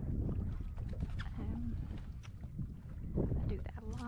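Wind rumbling on the microphone over open water from a small boat, with brief indistinct voice sounds in the middle and near the end.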